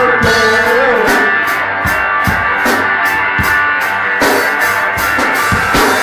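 Live rock band playing an instrumental passage between vocal lines: electric guitars strummed over a drum kit keeping a steady beat of about two hits a second.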